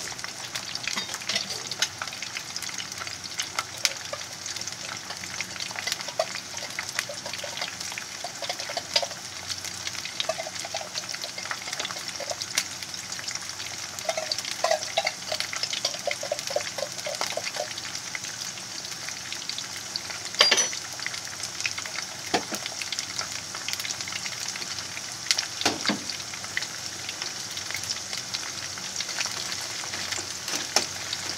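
Raw potato fries shallow-frying in hot oil in a frying pan: steady sizzling with scattered crackles, and two louder pops about twenty and twenty-six seconds in.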